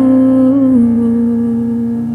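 Female vocalist holding the song's final sung note, which dips slightly in pitch about three-quarters of a second in and then holds, over a sustained electric keyboard chord.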